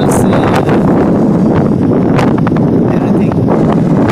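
Wind rushing over the microphone of a phone carried on a moving motorbike, a steady loud rumble.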